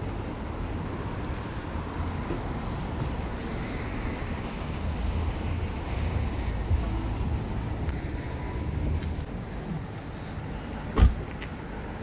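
Steady low rumble of city street traffic, then a car door shut with a single loud thump near the end.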